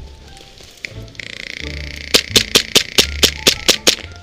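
Airsoft pistol fired in rapid succession, about nine sharp shots in under two seconds, with a steady hiss beneath them.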